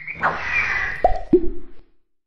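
Cartoon sound effects for an animated logo: a rising chirp right at the start, a whoosh, then two quick plops about a third of a second apart, the second lower in pitch, before the sound cuts off.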